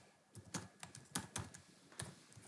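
Computer keyboard keys being typed as a password is entered: about seven quick, fairly quiet keystrokes at an uneven pace.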